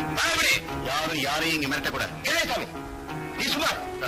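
Film background score of held, sustained notes, with a voice over it in several short phrases.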